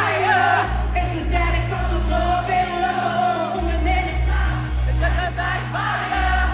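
Live pop song: women's voices singing into microphones over a band track with a heavy bass line, heard from within a concert crowd.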